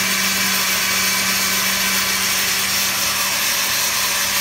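Countertop blender running steadily, with a constant motor hum under its whirr, puréeing a red chile sauce until it is finely ground.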